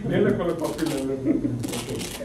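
A man's voice with two short bursts of paper-tissue rustling close to a lapel microphone, one in the first half and one near the end.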